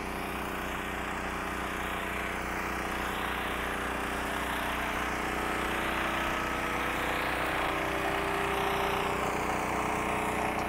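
Westinghouse 9500 portable generators running with a steady engine note under load.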